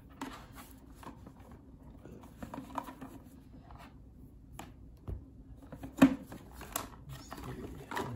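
Hands handling a plastic drip coffee maker and its power cord: soft rustling and light clicks, with a sharp plastic knock about six seconds in and a smaller one shortly after as the lid is worked open.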